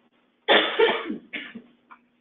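A person coughing close to the microphone: a loud cough about half a second in, then a shorter second cough about a second later.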